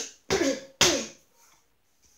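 A person coughing twice in quick succession, the second cough sharper, then quiet.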